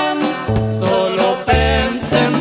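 Norteño corrido music in an instrumental passage between sung verses: an accordion-led melody over plucked strings, with a bass line.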